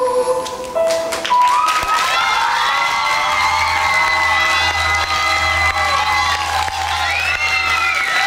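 The song's final held note and backing track end about half a second in, then the audience breaks into cheering and applause, with many voices shouting and calling out over each other.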